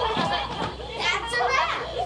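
A group of children laughing and chattering.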